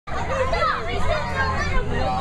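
Several young children's voices chattering and calling out over one another as they play.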